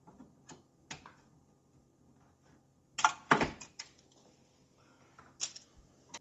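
Sharp clicks and knocks of zip ties being snipped and plastic packing parts handled inside a small 3D printer: a few single clicks at first, a louder cluster of knocks about three seconds in, and a couple more clicks near the end.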